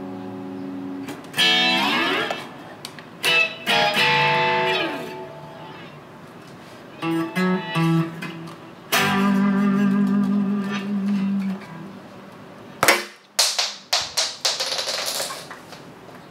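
Electric guitar being played: held notes and chords, with several notes sliding down in pitch and a long ringing chord. Near the end comes a run of sharp knocks and clatter.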